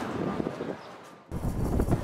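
The tail of background music fading away, then an abrupt cut about a second in to low wind noise buffeting the microphone outdoors.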